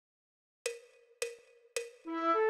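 Metronome count-in: three short clicks, evenly spaced at about 106 beats a minute, each with a brief ring, starting about half a second in, counting in the tune.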